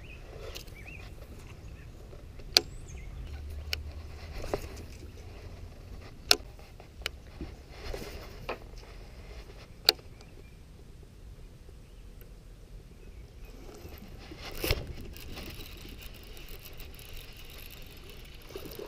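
Scattered sharp clicks and knocks from a baitcasting rod and reel being handled and cast, the loudest three coming a few seconds apart, over a faint low rumble.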